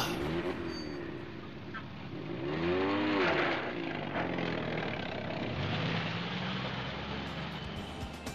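Jeep engine sound effect running and revving as the vehicle pulls away, its pitch rising and falling, most clearly about three seconds in.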